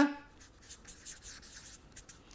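Felt-tip marker writing on paper: a run of faint, short scratching strokes.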